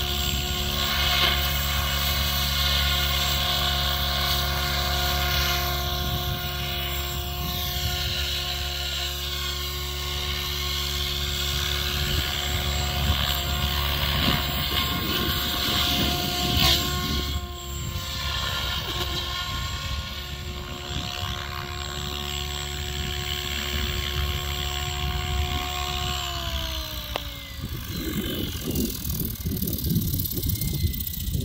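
SAB Goblin Black Thunder 700 electric RC helicopter in flight, its rotor and motor tones holding steady with sweeping rises and falls as it moves about. Near the end the tones fall in pitch as the rotor head slows and spools down.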